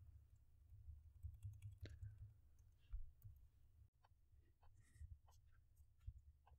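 Faint computer keyboard typing: scattered single keystrokes at an irregular pace over a low steady hum.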